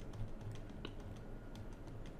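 Faint computer-keyboard typing: scattered light key clicks.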